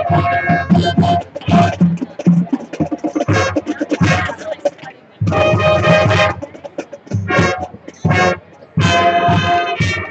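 High school marching band playing, brass and percussion hitting short, accented chords with gaps between them, and one longer held chord about five seconds in.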